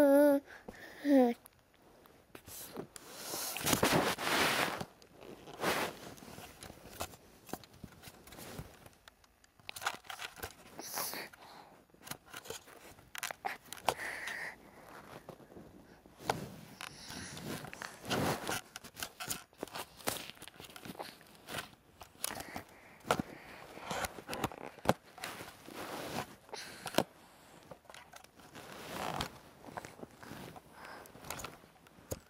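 Camera handling noise as a young child grips and fumbles it: irregular rustling, scraping and knocking of hands and clothing against the microphone. A child's cry trails off in the first second.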